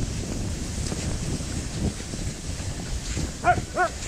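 Steady low rumble of wind and skis running on packed snow, then near the end two quick, high yips from one of the towing huskies, close together.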